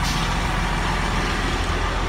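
Idling diesel engine of a Greyhound coach at a stop, a steady low drone.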